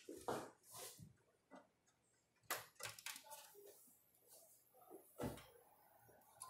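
Near silence with a few faint clicks and knocks from hands handling an open desktop computer case.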